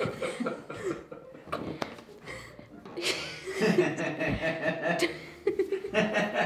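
Two girls laughing in fits of breathy giggles, growing louder about three seconds in.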